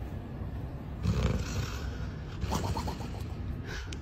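A sleeping dog snoring.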